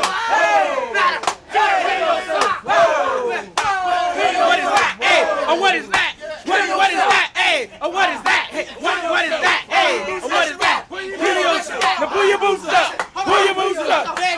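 A group of young men shouting and whooping over one another in excited, wordless hype, with frequent sharp cracks among the voices.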